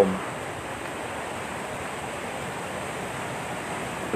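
Water rushing steadily out of a concrete sluice gate into a canal: an even, constant rush.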